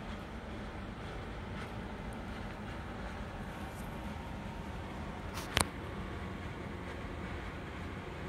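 Steady low background noise with one sharp click about five and a half seconds in.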